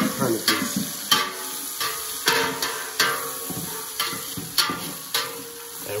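Chopped onions, bell peppers, celery and garlic sizzling in a hot pan over the browned venison drippings, stirred with a utensil that scrapes the pan in regular strokes about every half second. The vegetables are sweating down so that their moisture lifts the seared crust off the bottom of the pan.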